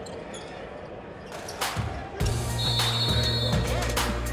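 Arena sound-system music with a steady bass line comes in about two seconds in, over a quieter stretch of court noise during a stoppage in play. Near the three-second mark a short, high referee's whistle blast sounds.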